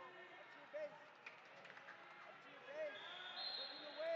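Faint gym-hall ambience at a wrestling match: short distant shouts from coaches and spectators, with a couple of soft knocks about a second in. From about three and a half seconds a steady high tone comes in and holds.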